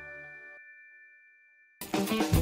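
A chiming logo jingle dies away, its two high bell-like tones ringing on for about a second after the rest of the music stops. Near the end, new music starts abruptly and loudly.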